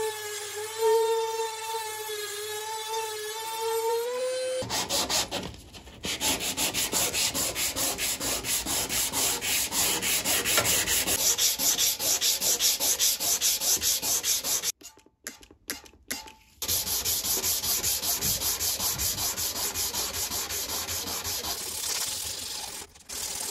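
A rotary tool with a small sanding drum whines, its pitch wavering, for the first few seconds. Then sandpaper is rubbed by hand over the copper body of an acetylene lantern in quick, even back-and-forth strokes. About fifteen seconds in the sanding stops for a few squirts of a water spray bottle, then wet sanding resumes.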